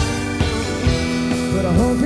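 A live rock band playing: electric guitars holding notes over drum hits and keyboard, at a steady loud level.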